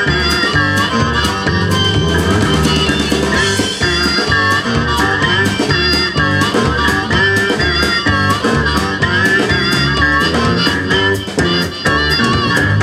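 Live blues band playing: an amplified harmonica leads with bending, wavering notes over guitar, electric bass and a drum kit keeping a steady beat.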